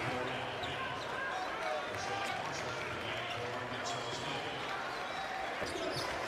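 Basketball arena sound: a steady crowd murmur with a basketball being dribbled on the hardwood court.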